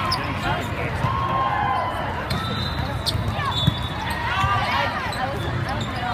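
Busy indoor volleyball hall: voices and calls from players and spectators over a steady low rumble from the many courts, with one sharp ball hit about three and a half seconds in.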